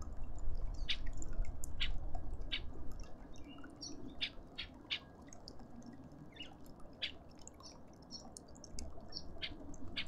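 Garden birds giving short, sharp chirps, scattered irregularly, over a low background rumble that fades after about three seconds.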